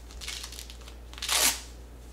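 Hook-and-loop tab on a cloth diaper cover being peeled open: a softer rasp shortly after the start, then a louder, short rip a little over a second in.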